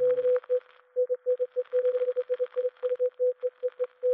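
Morse code: a single steady tone keyed on and off in short dots and longer dashes, over radio receiver hiss and crackle. Synthesizer chords cut off just after it begins.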